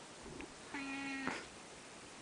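An orange tabby cat meowing: a short faint call, then a meow about half a second long held at one steady pitch.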